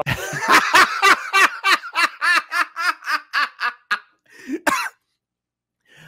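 A man laughing hard, a long run of rapid 'ha' bursts at about four a second that taper off about four seconds in.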